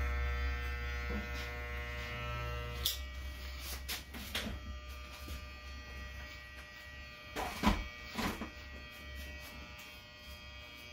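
Electric hair clipper buzzing steadily while trimming around the ear, stopping with a click about three seconds in. Then come a few scattered knocks and clatters, loudest near the end.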